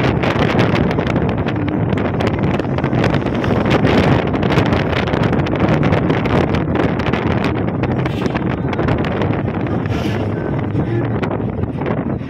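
Wind buffeting the microphone in the open back of a moving chander gari jeep, steady and gusty, with the jeep's running and road noise underneath.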